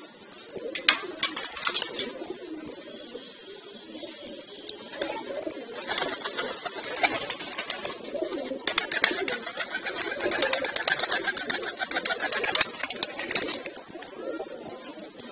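Domestic pigeons cooing steadily, a low wavering burble. Sharp clicks and rustles come over it about a second in and thickly in the last few seconds, the loudest part.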